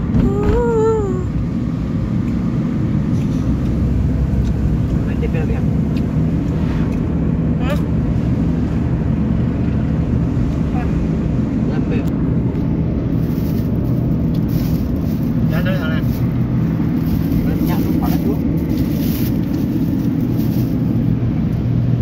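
Steady low rumble of a car's engine and road noise, heard from inside the cabin while driving. A brief vocal sound comes just at the start.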